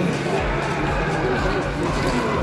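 People talking in the background, over an irregular low rumble that starts about half a second in.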